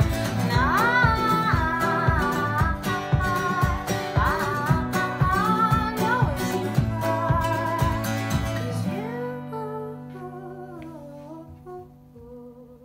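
Acoustic guitar and ukulele strummed together under a woman's singing. About nine seconds in the strumming stops and the last chord rings out and fades while a few quieter sung notes trail off, ending the song.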